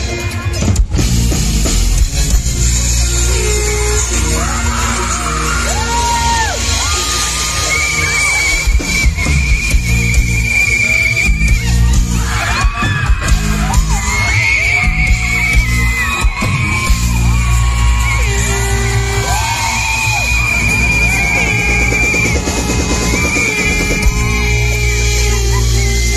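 Live band playing a loud instrumental intro: electric guitar and drums over heavy bass, with a lead melody that slides between notes.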